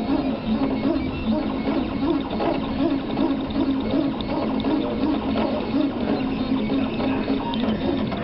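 A MakerBot 3D printer printing a transparent part, its stepper motors whining in short notes that step up and down as the print head moves.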